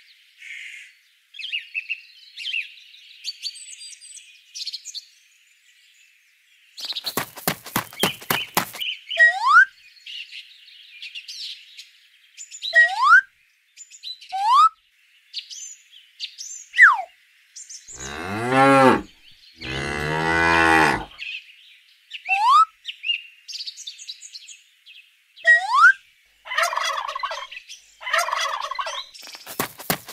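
Cows mooing: two long, low moos a little past the middle, set among birds chirping and giving short rising whistles throughout. A burst of rapid clattering comes a few seconds in.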